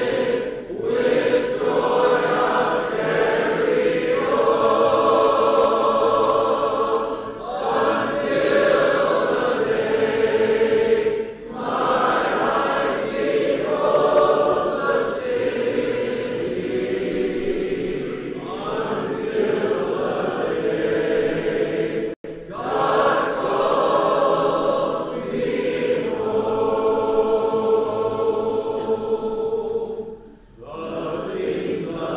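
Recorded choir singing a hymn in long sustained phrases, with short breaks between lines; the sound cuts out for an instant a little past the middle.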